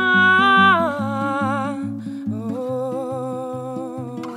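A woman sings a wordless vocal line over a plucked acoustic guitar. She holds a high note with vibrato that slides down about a second in, then holds a lower note from about halfway, while the guitar keeps an even picked pattern underneath.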